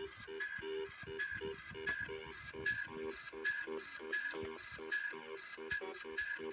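An Electric Duet tune plays through the Apple II's built-in speaker as a quick run of short beeping notes, about three to four a second. The Disk II drive's head arm ticks as it steps in time with the notes.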